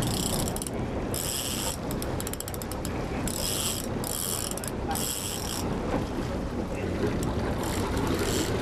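A fishing reel ratcheting in four short bursts of about half a second each, with a quick run of clicks between the first and second, as a hooked Spanish mackerel is played close to the boat. A steady low rumble runs underneath.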